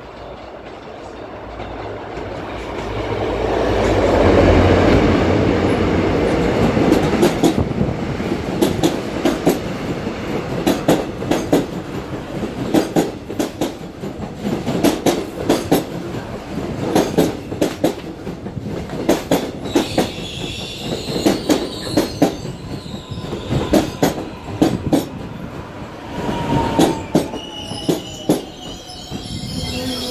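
Seoul Subway Line 4 electric train pulling into a station. The rumble builds to a peak about four seconds in as it arrives, then the wheels click steadily over the rail joints as the cars pass. A high squeal comes in from about twenty seconds, and a falling whine near the end as the train slows.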